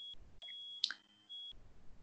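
A faint, high-pitched electronic beep tone, broken into three short stretches with dead silence between them, and a brief click just under a second in.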